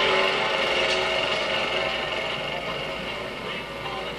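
Petrol push lawnmower engine running steadily, heard through a TV's speaker, slowly growing quieter.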